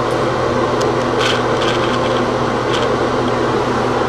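Steady room hum and hiss, with a couple of faint rubbing sounds from the camera being handled and refocused.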